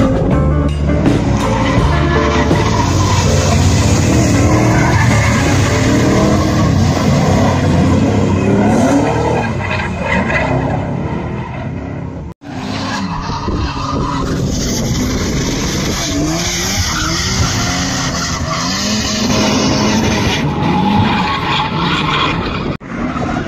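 Drift cars sliding on a track: engines revving up and down over tire squeal and skidding. The sound breaks off for a moment about halfway through.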